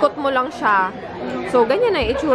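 A woman talking, with background chatter from other people in a large, busy room.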